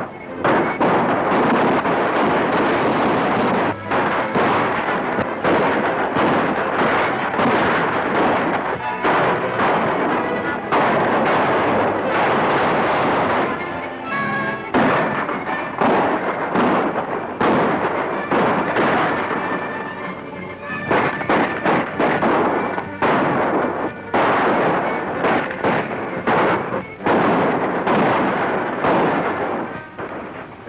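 Film gunfight: many gunshots in quick, overlapping succession, over a dense rumble of galloping horses.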